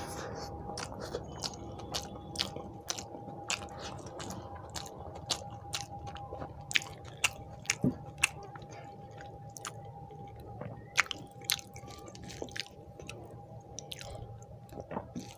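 Close-miked chewing of hand-eaten rice and mashed potato, with frequent irregular sharp wet mouth clicks and smacks. A steady hum runs underneath throughout.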